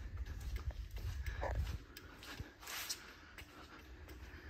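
Faint, irregular footsteps with low rumble from a hand-held camera being carried.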